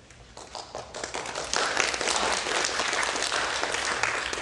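Audience applauding: a few scattered claps at first, swelling within about a second and a half into full, steady applause.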